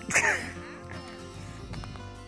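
A man's short grunt, falling in pitch, as he slips and falls in the snow, over steady background music.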